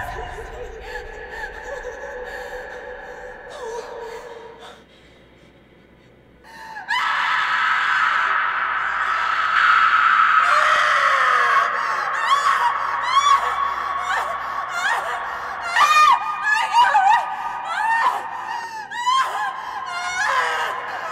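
A woman screaming and sobbing in distress. After a brief lull about five seconds in, a long loud scream begins at about seven seconds, then breaks into repeated shorter cries and gasps.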